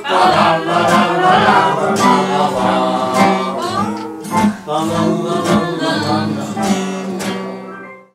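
A group singing along with strummed acoustic and electric guitars, a lively folk-style song; the music fades out near the end.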